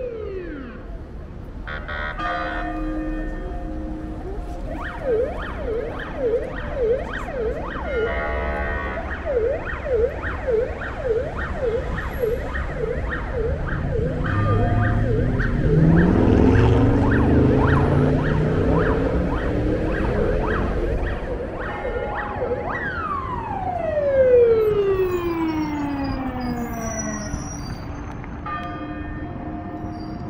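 Emergency vehicle siren on a city street: a fast yelp, its pitch dipping and rising about twice a second over traffic noise, then winding down in one long falling tone near the end.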